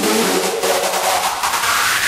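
Hardstyle electronic dance track in a build-up: the kick and bass drop out and a fast electronic snare roll plays under a rising noise sweep, leading into the next section.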